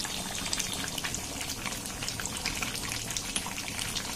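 Chicken and potato curry simmering in an aluminium kadai: the sauce bubbling with many small pops over a steady hiss.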